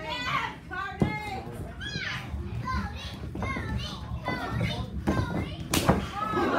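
Children's voices yelling from a crowd, high and excited, with a sharp smack about a second in and a louder one near the end.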